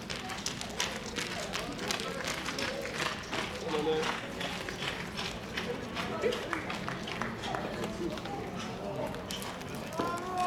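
Indistinct voices around a baseball field, with many short sharp clicks that are densest in the first few seconds.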